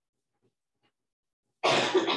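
Near silence, then near the end a single loud cough from a person, harsh and spread across a wide range of pitches.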